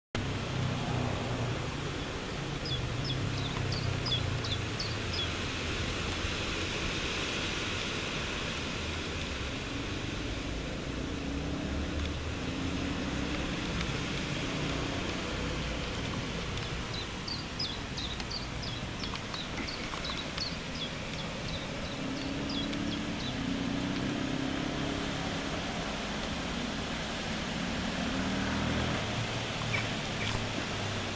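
Outdoor ambience: a steady low rumble like distant road traffic, with two runs of a bird's short high chirps, near the start and again about two-thirds through.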